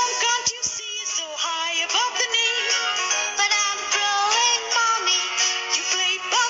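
Advertising jingle: a sung melody with wavering, vibrato-laden notes over instrumental backing music.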